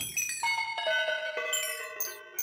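Critter & Guitari 201 Pocket Piano's Sample engine playing several notes that ring like chimes. New notes come in about half a second and a second in and overlap as they sustain.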